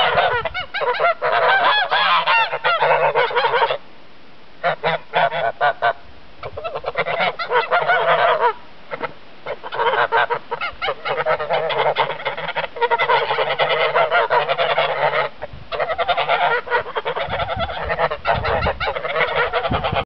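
A flock of domestic geese honking excitedly, many loud calls overlapping, with brief lulls about four, six, nine and fifteen seconds in.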